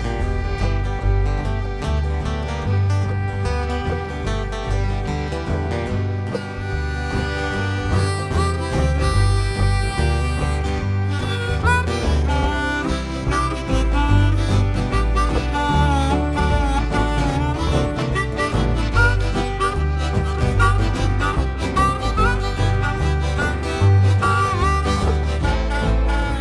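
Live country band playing an instrumental break after a sung verse: a steady bass line pulses underneath. About ten seconds in, a bending lead melody comes in over it.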